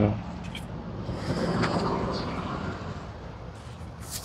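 Rustle of fabric hunting vests being handled and lifted, swelling in the middle, over a steady low hum.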